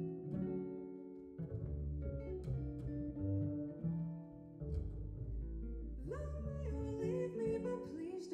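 Small jazz combo playing: guitar chords over a plucked upright bass line, with a woman's voice entering about six seconds in, sliding up into the first sung line.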